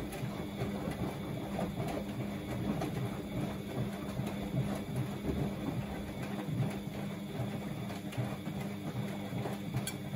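Bosch WFO2467GB/15 front-loading washing machine turning its drum in a wash cycle: a steady motor hum with light, irregular knocks as the laundry tumbles.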